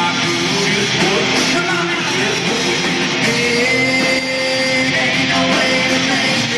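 A live country-rock band playing loudly through a concert PA, heard from the audience: electric guitars, bass and drums with singing. A long note is held through the second half.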